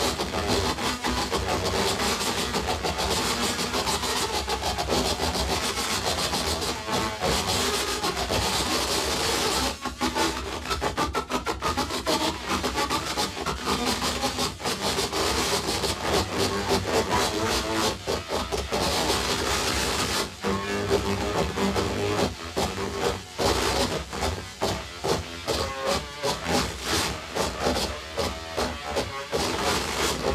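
Contact-miked pane of glass played with the mouth and lips, amplified into harsh rasping noise. The texture is dense and continuous at first, then turns choppy and stuttering in the second half.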